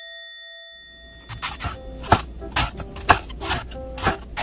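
A bell-like chime rings out and fades. About a second in, background music begins, with sharp beats roughly twice a second.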